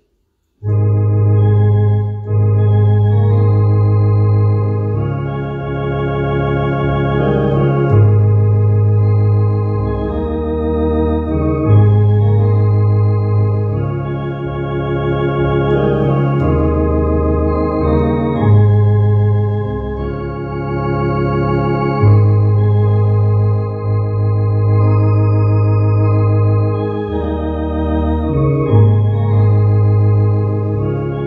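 MD-10 EVO electronic organ playing a hymn in sustained full chords over a strong bass line, the chords changing every second or two; it starts about half a second in.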